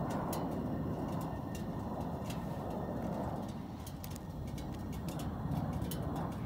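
Low droning rumble of a propeller aircraft flying past below and some distance away, swelling and fading slightly. Scattered sharp little clicks run through it.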